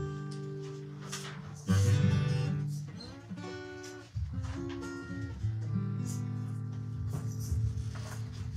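Acoustic guitar played live, strummed chords left to ring and fade. A new chord is struck loudly about two seconds in, then again about four seconds and five and a half seconds in.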